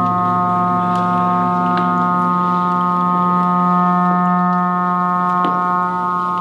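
Sustained organ-like drone chord of several steady held tones. A low tone drops out about a second and a half in, with a few faint clicks over the drone.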